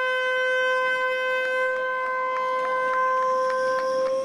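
Handheld canned air horn giving one long, steady blast, sounding the start of a race.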